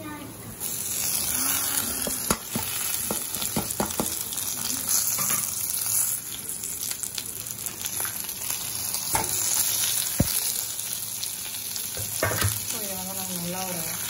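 Oil sizzling steadily in a stainless-steel pan as chana dal and dried red chillies fry, starting about half a second in, with scattered sharp clicks as grated coconut, coriander and beetroot go in.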